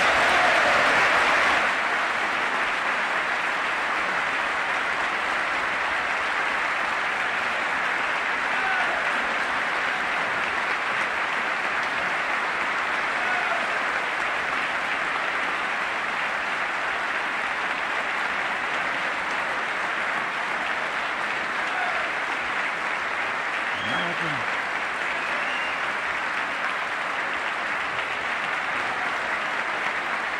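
Sustained applause from a large audience of members of Congress, starting abruptly, loudest for the first couple of seconds and then steady, with a few faint voices calling out within it.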